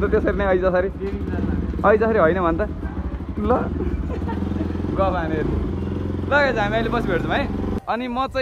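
Motorcycle engine running steadily, heard under voices, stopping abruptly near the end.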